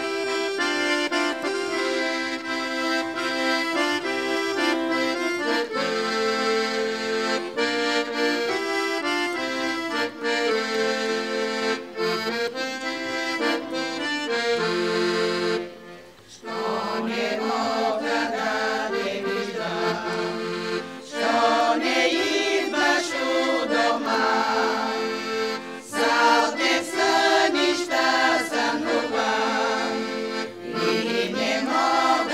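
A piano accordion plays a lively introduction on its own. After a short break about halfway through, a group of women's voices begins singing a Bulgarian song, with the accordion accompanying them.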